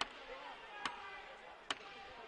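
Faint murmur of distant voices in a large arena hall, with two sharp knocks, one a little under a second in and one near the end.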